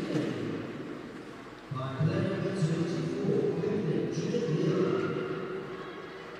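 Indistinct talking: voices with a short lull a little over a second in, then steady talk again for several seconds.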